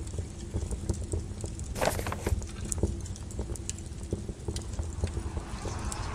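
Logo-intro sound effects: a low steady rumble strewn with irregular clicks and knocks, a louder crackling burst about two seconds in, and a hiss that swells near the end.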